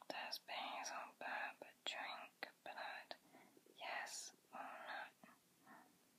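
A person whispering a run of short phrases.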